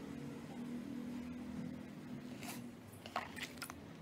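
A steady low background hum, then several short, scratchy brushing sounds of a kabuki makeup brush being worked in the last second and a half.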